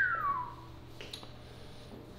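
A single falling whistle from a person, one clean tone sliding down about an octave over the first half-second or so, followed by a faint click about a second in.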